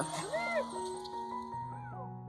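Background music with soft held notes, over which an excited dog gives two short rising-and-falling whimpers, one about half a second in and one near the end.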